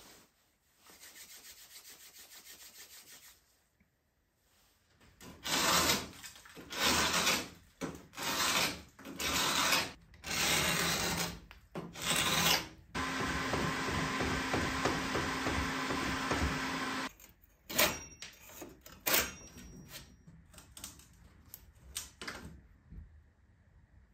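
A hand scraper dragged in repeated strokes along an old painted wooden window sash, rasping off flaking paint and dried glazing putty: about eight strokes of roughly a second each. Then a steady noise with a low hum for about four seconds, followed by a few shorter scrapes and clicks.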